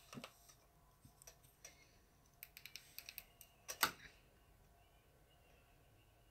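Faint light clicks and taps of a plastic hand-cream bottle and its packaging being handled and turned over in the hands, with a quick run of clicks about two and a half seconds in and a louder click just before four seconds.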